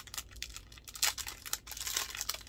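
Packaging crinkling and rustling in irregular bursts as a small key is handled and taken out of its wrapping, a little louder about a second in.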